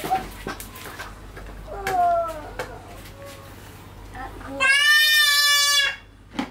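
A young child's voice: a short vocal sound about two seconds in, then a loud, high-pitched squeal held steady for over a second near the end. A few light clicks are scattered between them.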